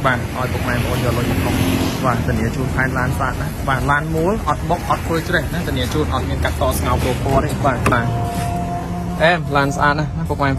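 A person talking almost continuously, over a steady low hum.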